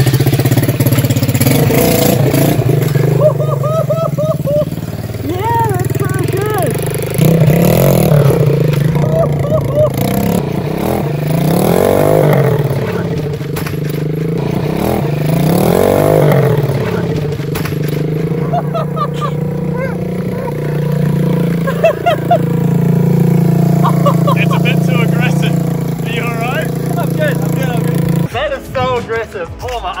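A small go-kart's 125cc single-cylinder four-stroke engine with a manual four-speed gearbox, being ridden hard. It revs up and drops back several times, and the engine stops about two seconds before the end.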